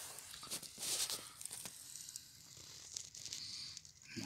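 Rustling and crackling of grass and leaves close to the microphone, with a few sharp clicks, loudest about a second in.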